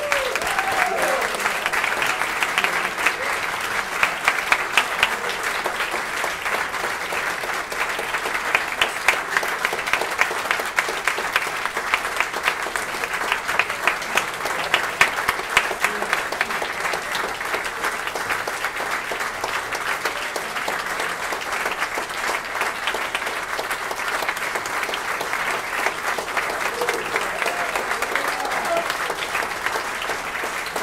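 Audience applauding steadily, a dense patter of many hands clapping, with a few voices calling out.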